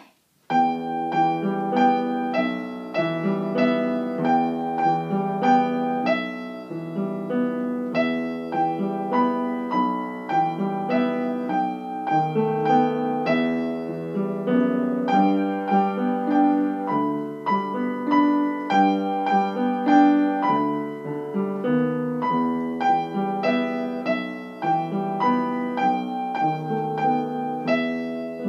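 Upright piano played as a duet, four hands at one keyboard, in a continuous run of notes that starts about half a second in.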